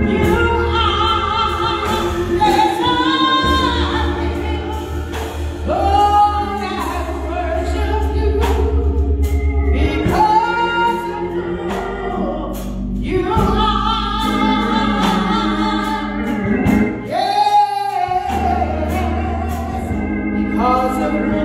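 A woman singing a gospel song into a handheld microphone, with instrumental accompaniment holding sustained low bass notes under her voice.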